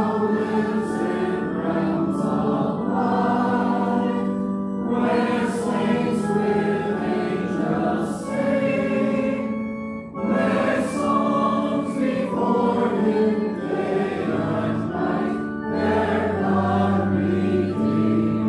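A congregation singing a hymn together, accompanied by organ with long held notes. The singing pauses briefly about ten seconds in, between phrases.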